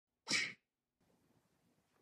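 A single short, sharp burst of a person's breath, about a quarter of a second long, near the start.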